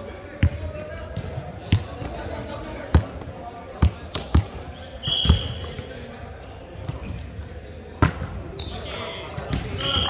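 A volleyball being hit and bouncing in a large, echoing gym: a scattered series of sharp hits, the loudest about eight seconds in. Short high-pitched tones sound about five seconds in and again near the end.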